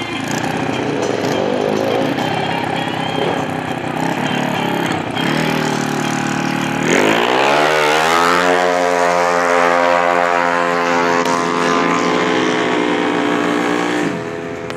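Drag-racing motorcycle revving at the start line, then launching about seven seconds in. The engine note climbs steeply and holds high at full throttle as it accelerates away down the strip, sinking slowly in pitch as it draws away.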